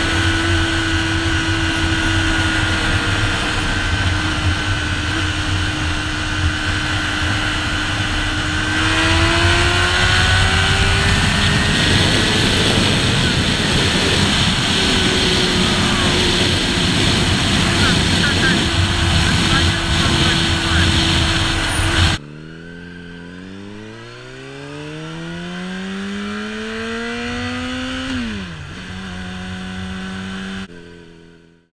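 Honda CBR600RR inline-four engine running at highway speed under heavy wind noise on the camera microphone. The engine note holds steady and rises as the bike speeds up about nine seconds in. After an abrupt cut about two-thirds of the way in, the wind noise drops away and the engine revs up through a gear, falls sharply on an upshift near the end, then settles.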